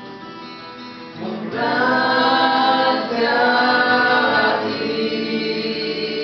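Singing to acoustic guitar accompaniment. It is softer for the first second, then the voices come in strongly, holding long notes.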